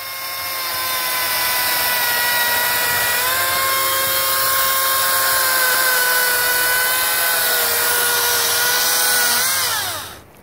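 A Makita 36-volt cordless chainsaw with a somewhat dull chain cuts through a log. Its electric motor gives a steady high whine over the rasp of the chain in the wood. Just before the end, as the cut finishes and the trigger is let go, the whine winds down in pitch.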